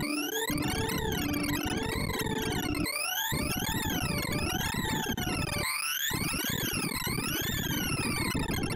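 ArrayVisualizer's sorting sonification: a rapid stream of synthesized beeps whose pitch follows the array values being accessed, as an in-place merge sort runs on 4,096 numbers. The beeps sweep up and down in repeated zigzag glides, about half a second each way, over a dense buzzing layer whose low end cuts out briefly three times.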